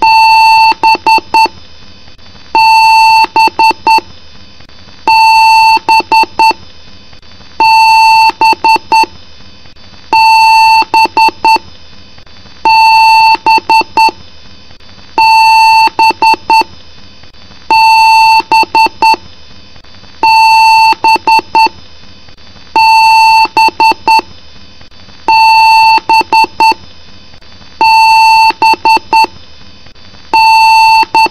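Computer BIOS beep code: one long beep followed by a quick run of short beeps, the pattern repeating about every two and a half seconds over a faint steady hum.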